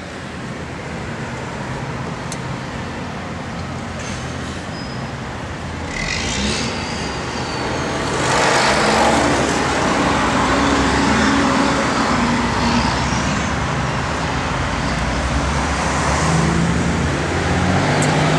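Road traffic going by: a steady rush of passing motor vehicles that grows louder about six seconds in and is loudest around nine to twelve seconds as a vehicle passes close, then eases off.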